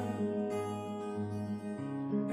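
Acoustic guitar playing a steady pattern of plucked notes, each left to ring into the next.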